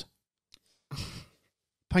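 A man's short breathy sigh, about a second in, with a faint click just before it.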